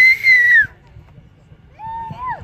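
A person whistling shrilly: one loud whistle, a little under a second long, that holds a high pitch and drops at the end. A fainter, lower-pitched call follows near the end.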